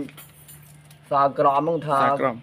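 A man speaking in Khmer. His speech starts again about a second in, after a short pause. A steady low hum runs underneath throughout.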